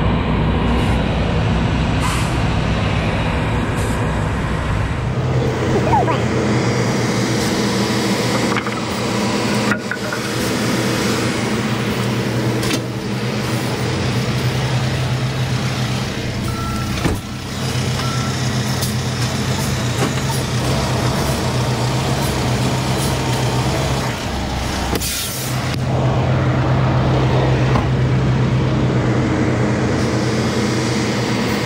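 Heavy truck's diesel engine running steadily at idle, with a few short knocks or air hisses. A brief steady beep sounds about midway.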